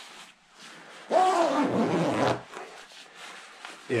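A man's drawn-out vocal sound lasting about a second, falling in pitch, followed by quieter rustling of the sleeping bag's nylon shell as the hood is pulled in.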